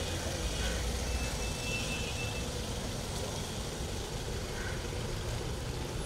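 A van's engine running as it moves slowly, with a steady low rumble.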